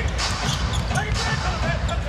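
Basketball being dribbled on a hardwood court, a series of bounces, over the steady murmur of an arena crowd.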